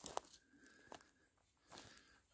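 A few faint crunching footsteps on dry, brushy forest ground, about three: one at the start, one about a second in and one near the end.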